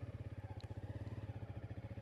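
Motorcycle engine idling with a steady, even low pulse.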